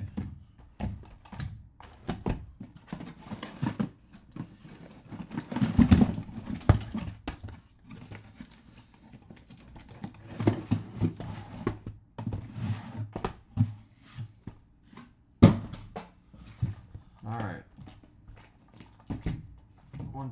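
Shrink-wrapped cardboard hobby boxes of trading cards being worked out of a tight cardboard shipping case and set down, with cardboard scraping and rubbing and scattered knocks as the boxes bump together. There is a louder burst of knocking about six seconds in and a single sharp knock about fifteen seconds in.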